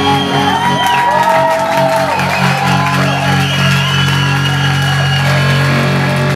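A live band's closing note held and ringing, a steady low sustained tone, while the audience cheers and whoops over it.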